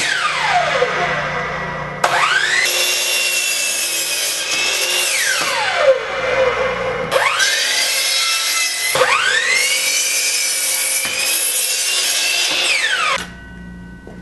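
Hitachi compound miter saw's electric motor whining: it winds down at the start, then spins up, runs at speed and winds down again three times, each rise and fall a clear glide in pitch, with abrupt cuts between runs.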